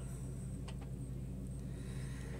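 Steady low background hum, with two faint soft ticks a little under a second in.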